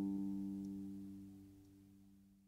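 A final plucked-string chord ringing out, its steady notes slowly dying away to nothing.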